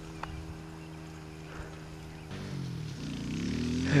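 An engine running steadily, then changing note a little past halfway, its pitch rising and growing louder over the last second and a half as it revs up or draws near.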